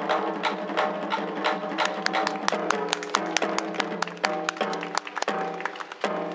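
Instrumental Kawachi ondo accompaniment: a large taiko drum struck with sticks on head and rim in a quick, driving rhythm, over an electric guitar playing the melody.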